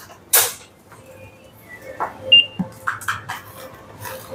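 Checkout-counter handling sounds: a brief rustle near the start, then scattered light clicks and knocks. A short high-pitched electronic beep about two seconds in is the loudest sound.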